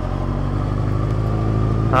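Honda CBR600 F2 motorcycle engine running steadily at low revs while riding slowly, heard from a helmet-mounted camera.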